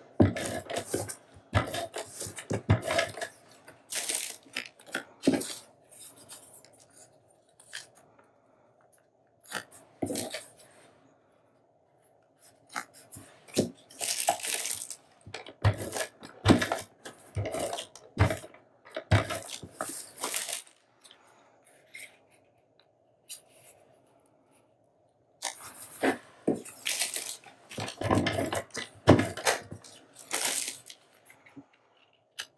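Adhesive tape pulled off a handheld tape dispenser and torn off in repeated short rips, mixed with paper being handled and pressed down, with a couple of quiet pauses.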